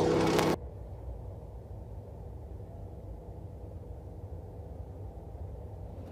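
Dirt late model race car engines running in the distance as a low, steady rumble. A louder pitched engine sound cuts off suddenly about half a second in.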